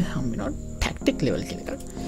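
A voice speaking in short fragments over a steady, thin high-pitched whine.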